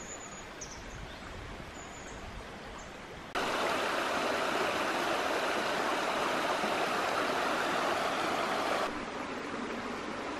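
Shallow river water rippling and rushing over stones, a steady wash of flowing water. It gets clearly louder about three seconds in and drops back a little shortly before the end.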